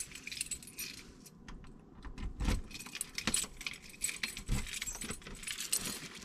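A bunch of keys jangling and clinking at a door lock, with a couple of dull knocks in the middle.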